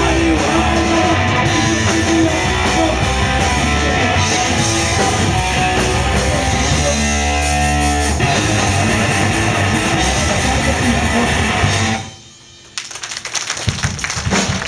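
Hardcore punk band playing live: distorted electric guitars, bass and drums at full volume. The song stops abruptly about twelve seconds in.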